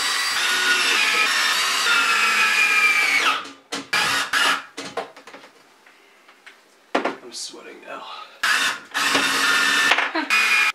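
Orange cordless power drill run against the wall: a steady run of about three seconds whose pitch drops as it winds down, then several short trigger bursts, and a longer run again near the end.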